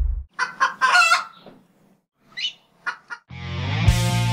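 A chicken clucking and squawking in a few short bursts of calls. About three seconds in, the band's electric guitars and bass start playing.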